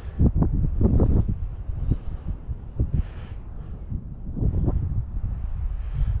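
Low wind rumble on the microphone, with a few short knocks and rustles from handling: a cluster about a second in, then single ones later.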